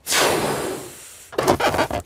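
Cartoon sound effect of a balloon being blown up: a long breathy rush of air that fades over about a second, then a second, shorter burst near the end.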